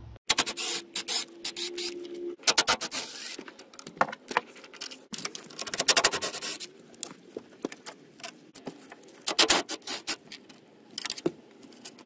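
Hand ratchet clicking in quick runs, with metal clinks, as the radiator mounting bolts are backed out.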